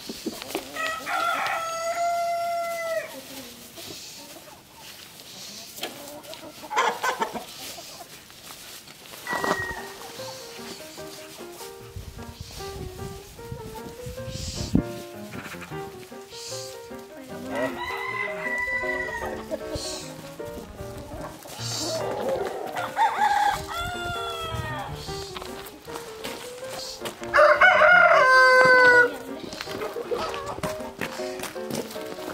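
Roosters crowing about four times, each crow a drawn-out cock-a-doodle-doo of a couple of seconds, the last and loudest near the end, with shorter hen calls between.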